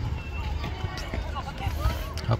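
Faint voices of players and spectators calling out across a football pitch, over a steady low rumble.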